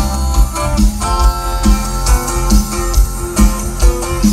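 A live band playing loudly over a PA system: an instrumental passage with a steady bass beat and no singing.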